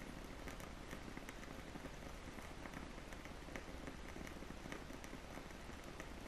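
Quiet room tone: a faint steady hiss with light scattered clicks.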